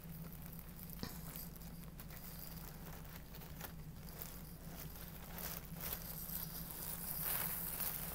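Faint, irregular crinkling and rustling of a thin clear plastic bag being rummaged through by hand, with a few light clicks.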